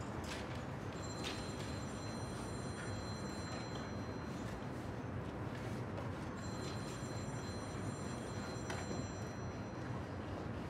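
A quiet pause with no music: a steady background hiss with a few faint clicks, and twice a faint high-pitched whine that holds for two to three seconds.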